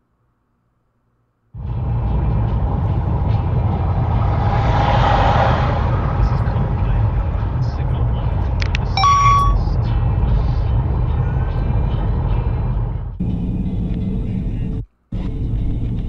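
Dash-cam recording of a car on the road: a steady, loud low rumble of engine and tyre noise inside the car, starting suddenly. A short beep comes about nine seconds in, and the sound cuts out briefly near the end.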